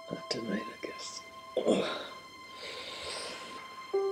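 A man's wordless grunts and strained, breathy exhalations as he pushes himself up off a bed with effort, the loudest about one and a half seconds in, over soft sustained music notes.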